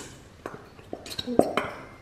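Plastic glitter-glue squeeze bottle squeezed hard in both hands, giving scattered sharp plastic clicks and crackles, the loudest about one and a half seconds in.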